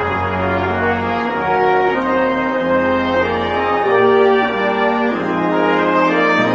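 Brass ensemble of trumpets and trombones playing slow, sustained chords, the harmony and bass note moving on about every second and a bit.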